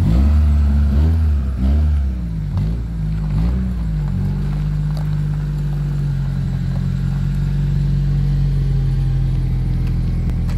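Honda Accord four-cylinder engine revved in a quick series of blips over the first four seconds, then settling to a steady idle.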